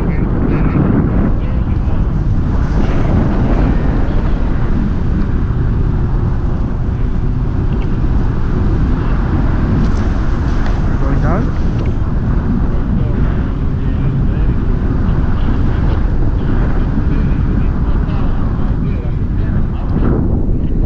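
Steady, loud wind buffeting the camera microphone, a dense low rumble from the airflow of a tandem paraglider in flight.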